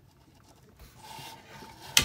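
Faint rubbing and handling noise of a hand moving over the discharger and its battery leads, ending in one sharp click.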